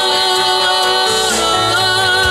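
A girl singing into a handheld microphone over instrumental backing, holding long notes, with a step in pitch a little past halfway.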